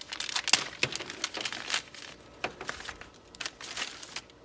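Packaging sleeve crinkling and tearing as a new hood lift gas strut is unwrapped by hand, a run of irregular crackles and rustles with the loudest about half a second in.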